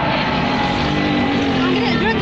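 Jet aircraft engine noise, a loud steady rush with a low tone sinking slightly in pitch, over the voices of a large crowd.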